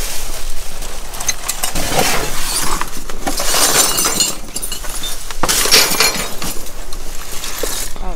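Broken glass shards clinking and grating inside the frame of a large wall clock as it is lifted and tilted, in repeated loud clusters of sharp clinks.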